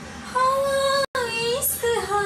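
A young woman singing unaccompanied: a long held note begins about a third of a second in, the sound cuts out for an instant about a second in, then the voice slides up through the next phrase.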